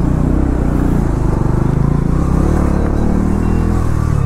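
Motorcycle engine running steadily at low revs, ridden slowly through stop-and-go city traffic.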